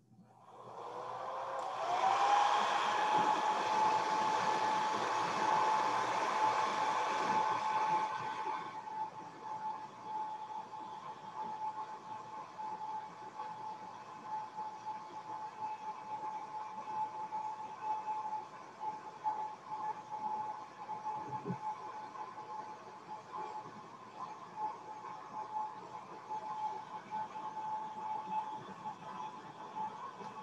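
Handheld hair dryer switched on: its motor whine rises in pitch as it spins up, then holds one steady tone over a rush of air. It is loudest for the first several seconds, then runs on more quietly for the rest.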